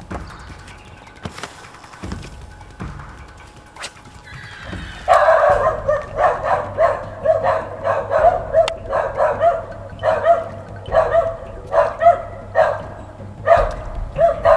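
A dog barking repeatedly in short yaps, starting about five seconds in and going on in quick runs of two or three a second.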